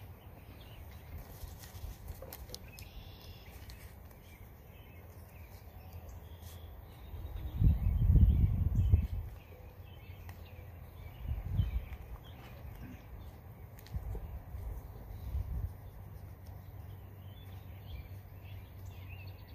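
Faint rustling and handling of a plastic sheet being worked over a tractor transmission's upright splined shaft. A deep rumble lasts about two seconds near the middle, with softer low bumps after it.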